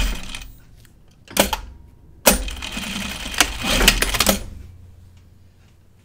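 A Juki sewing machine stops just after the start. Then comes a single sharp click, and from a little over two seconds in, a couple of seconds of rustling and clicking as the boiled-wool jacket is shifted at the machine.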